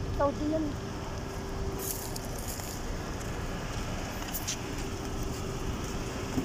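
A steady low hum under even background noise, with a brief faint voice right at the start.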